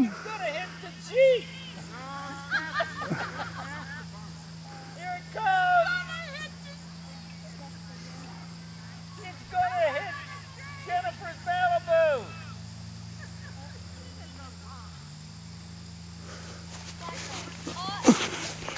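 Distant, unintelligible voices of people calling out across an open field in several short spells, over a steady low hum.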